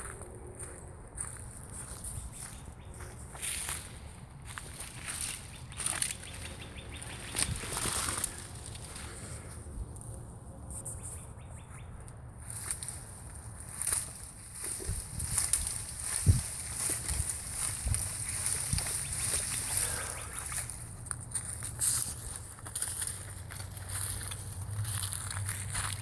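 Footsteps and rustling through dry leaf litter and brush, a string of irregular crunches and snaps as someone walks a wooded path.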